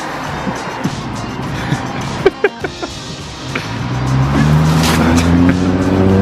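A few sharp clicks about two seconds in, then a vehicle engine getting louder and rising in pitch as it accelerates from about four seconds in, over background music.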